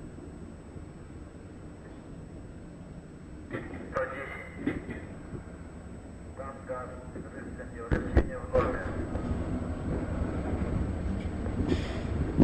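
Low rumble of a Soyuz-2.1a rocket's engines during ascent, with a few sharp pops; it grows louder about eight seconds in. Faint voices come and go over it.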